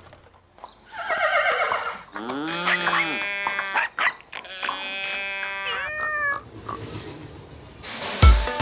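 A run of cartoon farm-animal calls, several in a row with short gaps between, some rising and falling in pitch.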